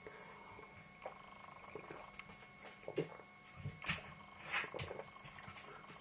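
A man drinking beer from a pint glass: faint swallowing and breathing, a handful of soft separate noises over a few seconds.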